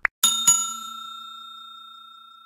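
A short click, then a bell struck twice in quick succession that rings on and slowly fades: a notification-bell sound effect.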